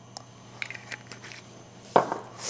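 Small clicks and taps of a glass olive-oil bottle being capped, then a louder knock near the end as it is set down on a wooden counter.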